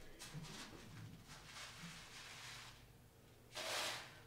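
Beads being scooped and poured into another container: faint hissing rattles in short runs, the loudest a brief burst just before the end. Faint murmuring voices sit underneath.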